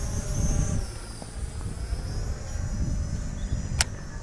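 Small quadcopter drone's propellers whining high overhead, the pitch rising and falling as it holds against strong wind, over a low rumble of wind on the microphone. A single sharp click near the end.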